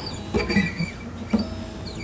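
Steel strings on an acoustic guitar being stretched by hand: two soft scraping sounds about a second apart, with faint ringing from the string. The new strings keep going flat, so they are being stretched to settle and hold their tuning.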